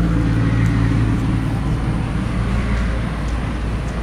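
A motor vehicle engine hums steadily nearby over a constant low rumble, then fades out about halfway through.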